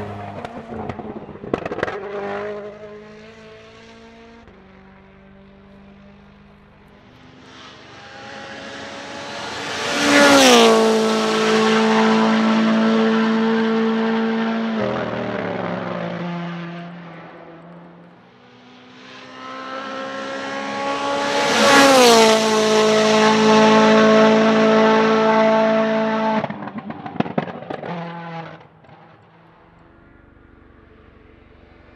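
WRC Rally1 hybrid rally cars with 1.6-litre turbocharged four-cylinder engines pass at full throttle, twice, about ten and twenty-two seconds in. Each time the engine note swells as the car approaches and drops in pitch as it goes by, then holds on the throttle for a few seconds. Bursts of sharp exhaust cracks and pops come just after the start and again after the second pass, as the car lifts off.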